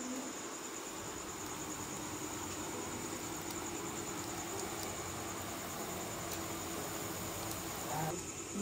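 Crickets chirping steadily, with a steady low hum underneath.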